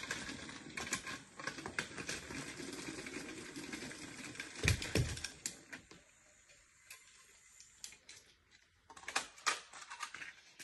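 Battery-powered toy train engines running along plastic track: a steady clattering whir full of rapid fine clicks, with two louder knocks about five seconds in. It then goes quiet, and near the end a few sharp clicks of plastic engines being handled.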